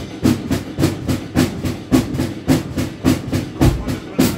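Acoustic drum kit played live in a fast rockabilly beat, snare and cymbal strokes about four a second over the bass drum, played along to a recorded rockabilly song.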